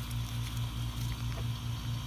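Electric AC vacuum pump running with a steady low hum that pulses evenly, about three times a second.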